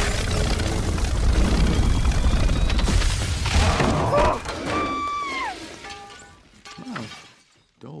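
Film sound effects: a loud, dense blast with a deep rumble for about four seconds, then a crash of shattering and breaking. It dies away into falling tones and scattered small rings of debris settling, leaving it quiet near the end.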